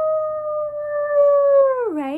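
A woman imitating a werewolf's howl with her voice: one long held 'ooo' that sinks in pitch as it breaks off near the end.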